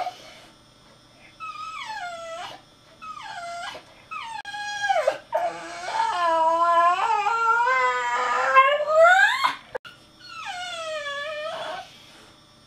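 A bull terrier howling and whimpering: three short cries falling in pitch, then one long wavering howl that rises near its end, then another falling cry.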